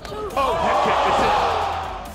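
A head kick landing in an MMA cage with a sudden smack, followed at once by a loud arena crowd roar that lasts until near the end and then fades.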